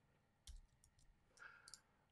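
Near silence with a few faint clicks from working a computer: one about half a second in and two close together near the end.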